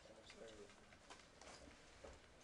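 Near silence: room tone with a few faint clicks of a pen stylus on a tablet screen as an equation is handwritten, and a faint low voiced sound about half a second in.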